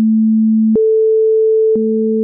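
Pure sine-wave test tones showing the octave. An A at 220 Hz switches about three-quarters of a second in to the A an octave above at 440 Hz, and near the end both sound together. Each switch makes a faint click.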